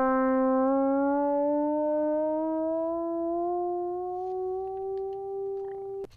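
Synthesizer tone, rich in harmonics, gliding slowly upward in pitch by a fifth over about five seconds and then holding the top note near the end. It is heard with Auto-Tune bypassed, so the pitch slides continuously instead of snapping to half steps.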